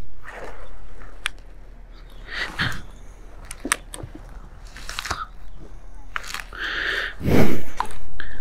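Rustling of a motorcyclist's riding jacket and pants and gear handling close to the microphone as he gets off the parked motorcycle, with scattered sharp clicks and a louder rubbing thump near the end.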